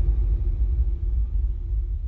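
A deep, low rumbling drone with a faint steady hum above it, slowly fading out: the tail of an animated end-screen sound effect.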